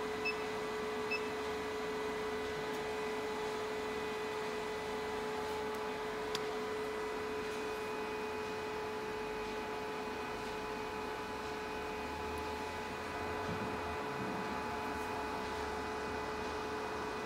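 808 nm diode laser hair-removal machine humming steadily with a constant tone, its cooling system switched on. Two short high beeps come near the start as the touchscreen's Ready button is pressed.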